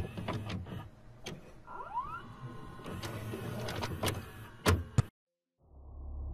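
VCR sound effect: mechanical clicks and clunks of a tape being loaded, with a short rising motor whine about two seconds in and a sharp knock near the five-second mark. Then the sound cuts out to silence for about half a second, and a low steady hum comes in.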